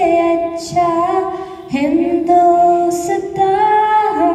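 A girl singing a Hindi patriotic song solo into a microphone, unaccompanied, holding long sustained notes that glide between pitches.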